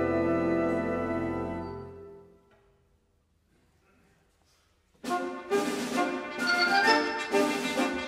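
Concert wind band holding a brass-heavy chord that dies away over about two seconds. About two and a half seconds of near silence follow, then the full band comes back in loud with sharp accented strikes.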